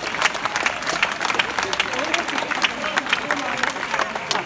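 Audience applauding, a dense patter of claps with some voices in the crowd mixed in.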